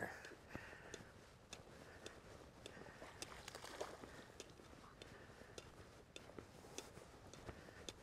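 Near silence: faint outdoor ambience with scattered light ticks and rustles.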